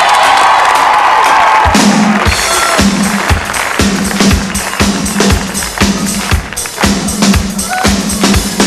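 Studio audience cheering and whooping. About two seconds in, the band starts the song's intro: a steady kick-drum beat under a held low note.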